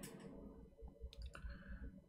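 Faint room tone with a few soft clicks a little over a second in.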